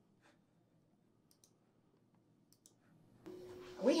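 A few faint, sparse clicks, roughly a second apart, from a computer mouse as a tip web form is filled in. About three seconds in, a steady room hum starts and a voice begins.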